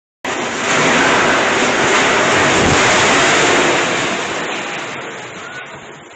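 Cyclone wind rushing loudly, a steady roar of noise that begins just after a brief dropout and fades away over the last couple of seconds.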